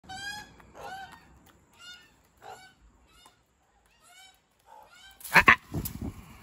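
Australian magpies calling in a series of short pitched calls, about one a second, each with a slight bend in pitch. Two loud sharp knocks come about five and a half seconds in.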